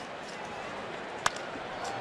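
A single sharp crack of a wooden baseball bat hitting a pitched ball, a little over a second in, the ball caught off the end of the bat. Under it, the steady noise of the ballpark crowd.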